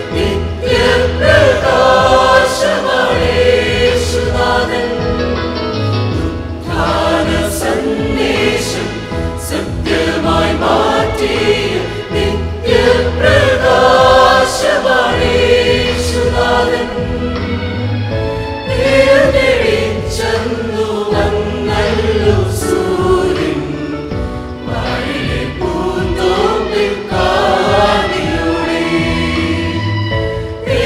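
Mixed choir of men and women singing a Malayalam Easter song in harmony, over an instrumental accompaniment with a pulsing low bass line.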